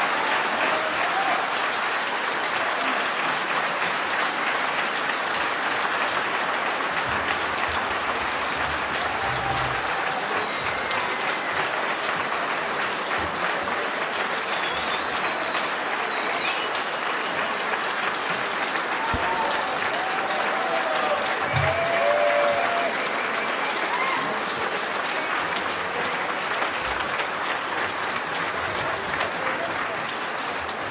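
Sustained applause from a large audience, steady and dense throughout, with a few calls from the crowd rising above the clapping in the middle stretch.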